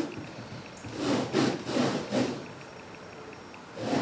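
Rag rubbing and wiping the bead seat of an aluminium beadlock wheel, drying it before bead sealer goes on. There are a few quick scrubbing strokes about a second in, a quieter pause, and another stroke near the end.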